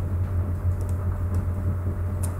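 Steady low electrical-sounding hum of the recording's background, with a few faint clicks.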